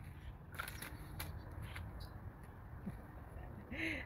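Quiet outdoor background noise with a low rumble and a few faint, short clicks in the first second and a half.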